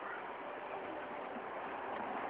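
Steady background noise with no distinct sound event, an even hiss at a low level.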